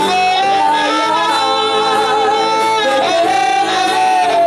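A man singing live into a microphone, holding long notes that waver and slide from one pitch to the next.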